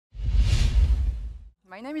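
Intro logo sound effect: a loud whoosh over a deep low rumble that comes in quickly and fades away over about a second and a half.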